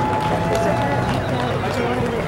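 Indistinct voices of a gathered crowd talking outdoors, no words clear, with a brief steady tone in the first second.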